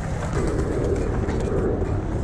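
Inline skate wheels rolling over concrete: a steady rumble with a hum that comes in about a third of a second in and holds almost to the end.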